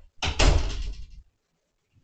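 An interior door being shut: a sudden knock and rumble lasting about a second.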